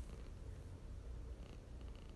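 Tabby cat purring softly, a low steady rumble.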